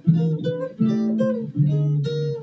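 Guitar playing a short intro of chords, three struck in turn about three-quarters of a second apart, each left ringing.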